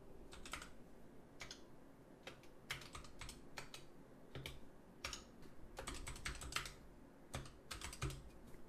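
Faint typing on a computer keyboard: irregular, unevenly spaced key clicks as a command is typed out.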